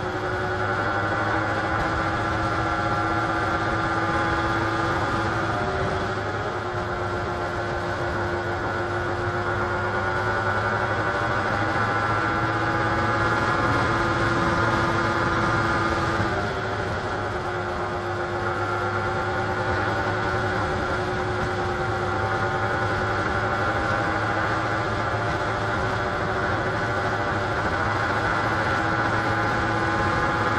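Benelli Leoncino 250's single-cylinder engine running steadily at cruising speed, heard from the handlebars with road and wind noise. Its note dips briefly about halfway through as the throttle eases, then picks up again.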